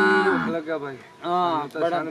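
A cow lowing: one long, drawn-out moo that drops in pitch and ends about half a second in. A man's voice follows.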